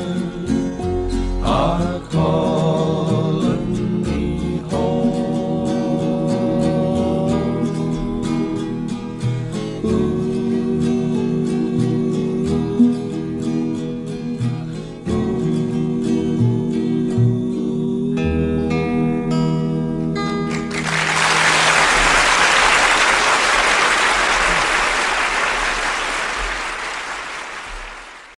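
Closing bars of a folk song: held four-part vocal harmonies over acoustic guitars and upright bass, ending about 21 seconds in. Audience applause follows and fades away near the end.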